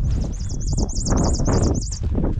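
Male carbon sierra finch singing in flight: a fast series of high, wavering notes, about six a second, over wind rumbling on the microphone.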